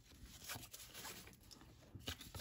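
Faint rustle and slide of cardboard baseball cards being flipped through by hand, with a few soft ticks of card edges.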